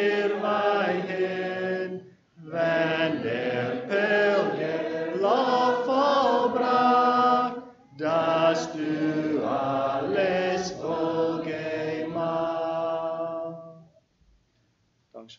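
Voices singing a hymn in long held notes, in three phrases with short breaks about two and eight seconds in; the singing ends near the end.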